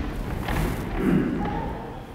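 A congregation standing up from wooden chairs: thuds and shuffling of chairs and feet, loudest about a second in.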